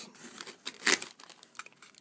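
Plastic packaging bags crinkling and rustling as a hand moves wrapped accessories around in a cardboard box, with one louder rustle about a second in.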